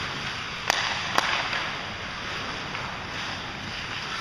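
Two sharp hockey stick-and-puck cracks about half a second apart during ice hockey play, over the steady hiss of the rink.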